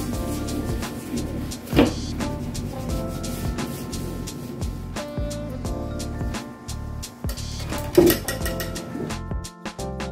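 Background music with changing instrumental notes, with two louder short knocks, about two seconds in and about eight seconds in.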